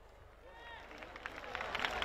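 Rally crowd starting to cheer and clap, swelling from near quiet to loud over the second half, with scattered shouted voices among the claps.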